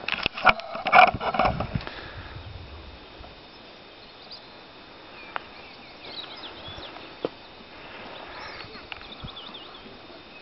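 Outdoor countryside background. A cluster of sharp clicks and rustles in the first two seconds, then a low steady background with faint, high bird chirps in the second half.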